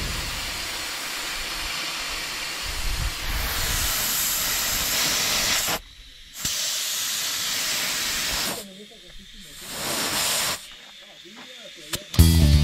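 Air hissing out of a Chevrolet truck's tyre through the valve stem as it is aired down for off-road driving, in three spells: two long ones and a short one about ten seconds in. The pauses between them are where the pressure is checked with a gauge.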